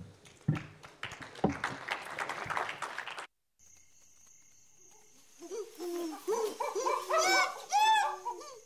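Audience applause that cuts off suddenly about three seconds in. After a short gap, an animal's hooting calls start up in a quickening series, each arching note climbing higher in pitch, over a faint high steady tone.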